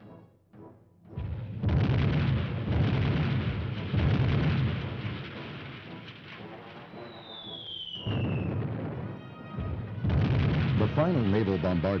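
Bombardment sound effects: a continuous loud rumble of explosions and gunfire that starts about a second in. A single falling whistle cuts through about seven seconds in.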